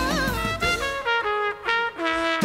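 Jazz band music led by a brass instrument: a held note that bends off, then a phrase of about six short, separate notes.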